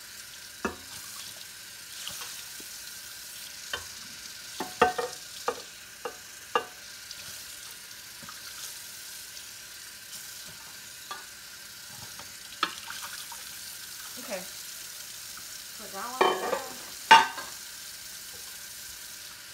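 Dishes and cutlery being hand-washed in a kitchen sink: scattered sharp clinks and knocks, some ringing briefly, with the loudest ones near the end. A steady hiss runs underneath.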